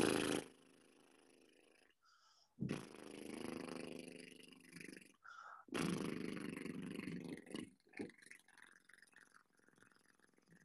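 A man doing a voiced lip trill as a vocal warm-up: a buzzing "brrr" through loosely closed lips, held twice for two to three seconds each with a short break between.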